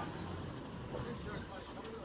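Low, steady engine rumble of a garbage truck running down the street, under faint outdoor street noise.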